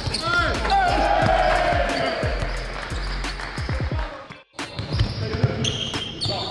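Basketballs bouncing on a hardwood court in repeated short thuds, with a few sneaker squeaks near the start. The sound drops out briefly about three-quarters of the way through.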